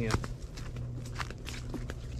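Footsteps on the dirt and leaf litter of a riverbank: a handful of short, irregular steps over a steady low hum.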